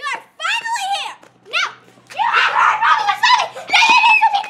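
Girls shouting and screaming in high voices without clear words, with a longer, rougher scream about halfway through.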